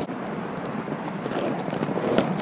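A penny board's polyurethane wheels rolling on a paved path at about 12 km/h: a steady noise with a few sharp clicks, with wind on the microphone.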